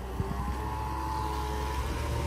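Dump truck's diesel engine running steadily while the tipper bed is raised to dump a load of murram, a low hum with a steady high whine over it.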